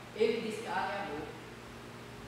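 Speech only: a woman's voice saying one short phrase.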